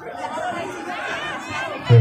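A crowd of spectators and players chattering, many voices overlapping at once. Just before the end a much louder man's voice cuts in over them.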